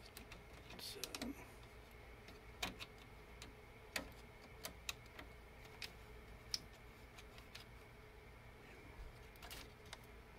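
Scattered faint clicks and taps of a plastic 3D-printer X-carriage plate being handled and shifted against the carriage, about a dozen in all, over a faint steady hum.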